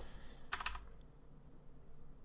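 Faint computer keyboard key presses: one short tap about half a second in and a tiny click a little later.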